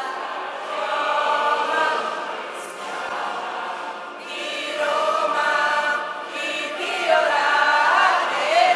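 A crowd of women and men singing together in unison, in long sung phrases with brief breaks about three seconds in and again near six seconds.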